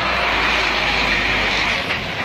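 Fire truck engine running steadily close by: a low rumble under a steady hiss.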